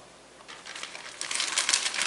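Small clear plastic bags of polyester capacitors crinkling and rustling as they are handled and moved about, starting about half a second in and getting louder.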